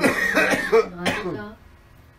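A person coughing and clearing the throat, with a harsh start, dying away about a second and a half in.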